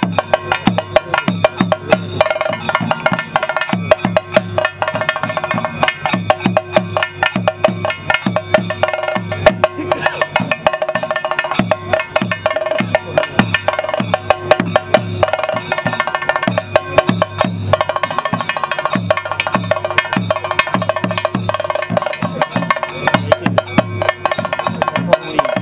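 Fast, continuous percussion, typical of the chenda drum ensemble that accompanies Theyyam, with a steady ringing tone held above the drum strokes.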